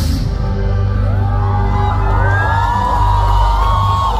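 Live heavy-metal band sound in a concert hall: a cymbal crash right at the start, then a held low bass note while the crowd cheers and whoops from about a second in.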